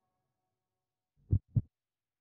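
A heartbeat-style sound effect: two short, deep thumps about a quarter of a second apart, a little over a second in.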